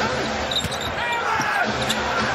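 A basketball being dribbled on a hardwood court, with the steady background noise of an arena.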